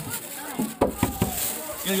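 Children's voices close by, crowding round a vehicle window as fried snacks are handed out from a plastic bag. A few sharp knocks or rustles come about a second in.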